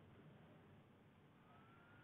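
Near silence: a pause between speech, with only faint room hiss and a faint thin tone rising slightly near the end.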